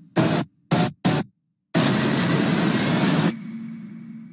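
Edited crash sound effects of an airliner hitting the ground: three short, loud bursts of rushing noise in quick succession, a moment of silence, then a longer roar that cuts off abruptly about three seconds in, leaving a low hum.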